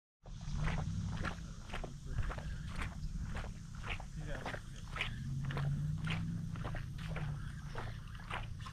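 Footsteps on the riverbank: a steady run of short, irregular steps, about two or three a second, over a low steady rumble.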